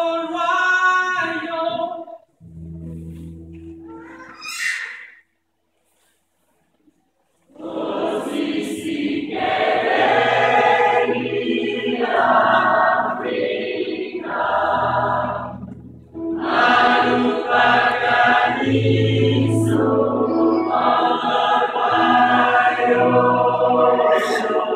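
Gospel choir singing: a phrase ends, quieter low held notes follow, then after a pause of about two seconds the full choir comes back in loud, with deep held bass notes under the voices.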